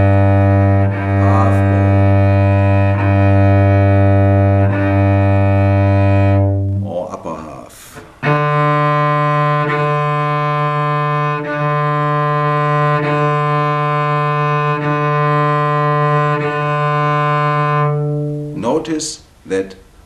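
Cello open strings bowed in half-bow strokes, each note held with a bow change about every one and a half to two seconds. First a lower string sounds, then after a short break about seven seconds in, a higher string sounds the same way until near the end.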